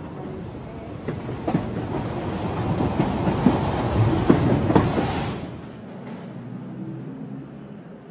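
A train running on the rails, its wheels clattering over the track joints; the sound builds to its loudest about four to five seconds in, then drops away quickly.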